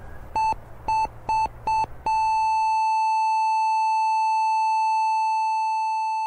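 Hospital heart monitor beeping at a quickening pace, roughly two beeps a second. About two seconds in it goes into one long unbroken tone: a flatline, the sign that the patient's heart has stopped.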